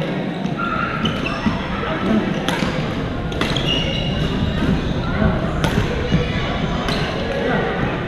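Badminton rackets hitting a shuttlecock in a rally: several sharp cracks an irregular second or so apart, echoing in a large gym hall, over the steady chatter of many players.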